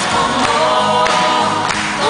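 A man and a woman singing a duet into microphones, with a live band accompanying.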